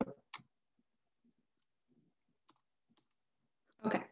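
Quiet clicks of a computer mouse: a pair at the start, another a moment later, a few faint ones, then a louder cluster near the end.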